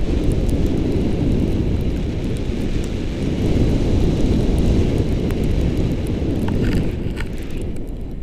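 Wind buffeting the camera's microphone in paraglider flight: a loud, steady low rumble, with a few faint clicks about seven seconds in.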